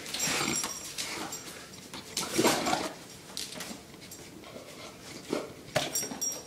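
A big dog making a few short vocal sounds while it is coaxed to jump for something held out to it, with a couple of sharp clicks near the end.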